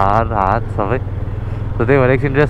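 A person talking over a motorcycle engine running steadily while riding. The talk breaks off for about a second in the middle, leaving only the engine's low, steady sound.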